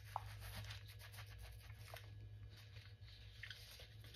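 Faint rustling and light clicks of hands handling a paper junk journal and its satin ribbon tie, over a low steady hum.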